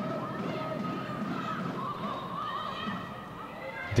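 Football stadium crowd noise, with drawn-out voices calling and chanting from the stands.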